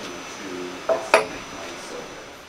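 Two sharp metallic clinks about a quarter second apart, a little under a second in, the second louder and ringing briefly: metal tools and brass plumbing fittings knocking together as a valve is fitted to a water tank.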